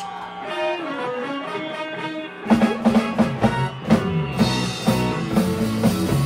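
Live rock band playing: a lone guitar picks out a melodic line, then about two and a half seconds in the drums and bass come in together and the full band plays on a steady beat.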